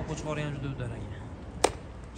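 A drawn-out voice, falling a little in pitch, lasting just under a second. About a second and a half in comes a single sharp knock, the loudest sound of the moment.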